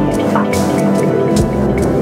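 Electronic instrumental music from a hardware synth jam on a Korg Kaossilator and Kaoss Pad: held synth pad chords over a looped beat of high ticks and low thuds, with short high blips repeating over it.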